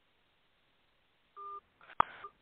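A short electronic beep of two steady tones sounding together, about a second and a half in, after near silence; a sharp click and a brief rustle follow at the very end.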